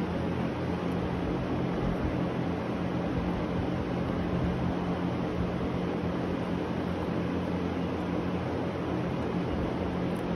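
A steady machine drone: an even hiss with a low, constant hum under it, unchanging throughout, with a few faint ticks on top.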